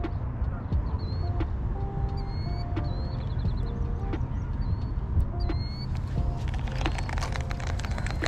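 Outdoor pond-side ambience: a steady low rumble of wind on the microphone, with high bird chirps and a short trill and scattered brief mid-pitched tones. A quick run of clicks sets in about six seconds in.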